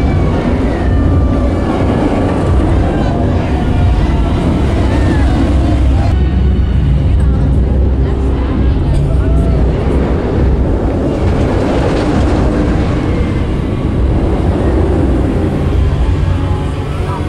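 Steel inverted roller coaster train running on its track with a deep, steady rumble, with short voices and cries from riders and onlookers over it.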